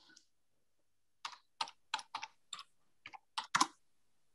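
Computer keyboard typing: a run of about ten key clicks, irregularly spaced, over about two and a half seconds, starting about a second in.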